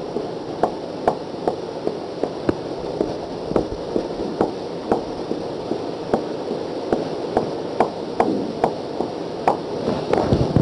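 Marker pen tapping dots onto a whiteboard: short sharp ticks about two or three a second, over a steady hiss.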